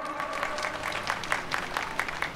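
Crowd applauding: many hands clapping steadily through a pause in the speech.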